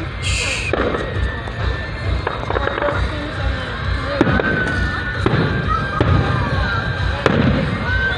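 Aerial fireworks bursting: about five sharp bangs, roughly one to two seconds apart, over the chatter of onlookers.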